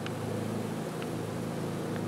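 Honeybee swarm buzzing: the steady, massed hum of many bees flying around and crawling over the cluster.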